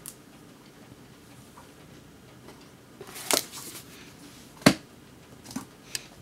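Books being handled in a quiet room: a short paper rustle about halfway through, then a single sharp tap, with two fainter taps near the end.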